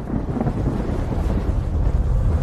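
Cinematic logo-intro sound effect: a deep rumbling whoosh that swells steadily louder.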